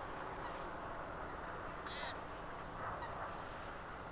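Two brief animal calls over a steady outdoor background hiss: a short, high one about two seconds in and a weaker, lower one about a second later.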